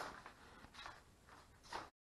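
Faint, irregular scuffs and rustles in a small workshop, about five in two seconds, the loudest near the end, then the sound cuts off suddenly.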